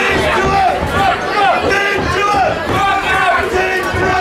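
Boxing spectators shouting and cheering, many voices overlapping with no single clear speaker.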